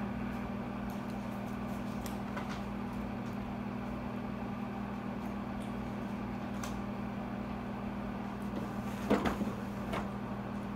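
Steady low electrical hum of a classroom projector and its cooling fan, with a few faint clicks. A brief knock or rustle comes about nine seconds in.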